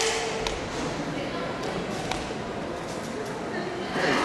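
A few sharp snaps and soft thuds from taekwondo uniforms and bare feet on foam mats during a poomsae form, over the steady murmur of a large sports hall.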